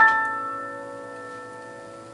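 Electric stage piano: a chord struck and left to ring, fading away slowly.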